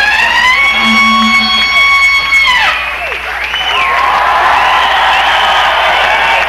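A long, high note in a live rock show rises in, is held steady, then drops away just under three seconds in. Further sliding and held notes follow over a cheering, shouting crowd.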